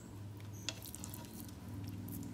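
Faint handling sounds of hands pulling kitchen string tight around a raw stuffed pork loin on a clay plate, with light ticks and one small click about two-thirds of a second in, over a low steady hum.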